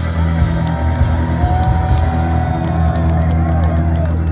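Live rock band of electric guitars and bass hitting and holding the final chord of a song, the chord ringing on steadily. Crowd whoops and yells come over it.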